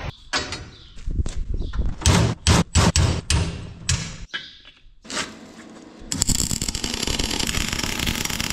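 Sharp metal knocks and clanks for the first few seconds, as rebar is handled and struck. From about six seconds in, a wire-feed welder's arc crackles steadily as it welds the bent rebar gate pin.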